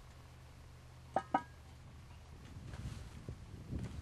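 Cast iron Dutch oven lid set onto its pot: two quick metallic clinks about a second in. Then lower, uneven scuffing of footsteps on dry dirt.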